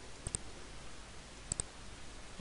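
Computer mouse button clicked twice, about a second apart. Each click is a quick press-and-release pair, heard over a faint steady hiss.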